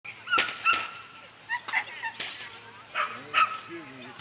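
A dog barking repeatedly in short, high-pitched barks, about seven in all.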